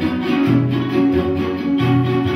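Music of a jarana string ensemble: strummed jaranas playing chords over a steady low bass line.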